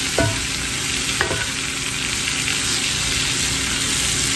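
Sausage, potatoes, bell peppers and onions sizzling steadily in a cast-iron skillet while a wooden spoon stirs through them, with two brief scrapes of the spoon in the first second and a half.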